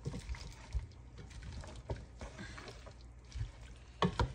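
Wooden spatula stirring and tossing sautéed cabbage and pork in a nonstick pan: irregular soft knocks and scrapes against the pan, over a faint hiss of the frying.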